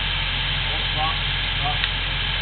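Engine of the job-site equipment running steadily at idle, a low even drone. Faint voices come in briefly about halfway through.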